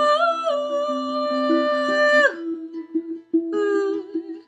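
A woman singing a long, wordless "ooh" over a strummed ukulele. The held note breaks off after about two seconds, and a second "ooh" starts near the end while the ukulele keeps playing.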